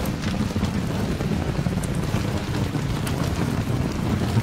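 Steady rain with a low rumble of thunder underneath and a few sharper drop ticks.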